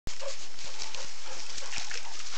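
A Weimaraner digging in wet creek sand with its nose down, making short, irregular scrapes over the steady hiss of the creek water.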